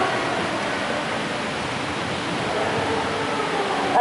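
Steady, even rushing noise in a large church hall, with no distinct events.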